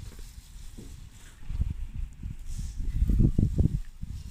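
A garden hose's pistol-grip spray nozzle sends a jet of water hissing onto a shrub bed. Under it runs an irregular low rumble, loudest a little after three seconds in.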